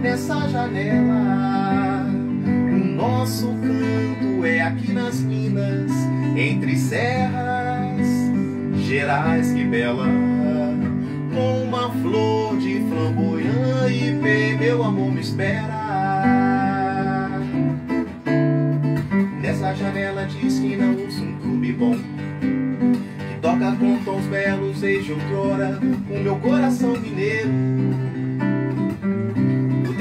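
Instrumental break in a song: an acoustic guitar strums chords under a melody line that glides in pitch.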